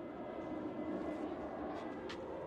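A vehicle engine running steadily nearby, a low even rumble.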